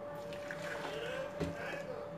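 Watermelon juice poured from a steel bowl into a plastic blender jug: a soft, steady splashing pour, with a small knock about one and a half seconds in.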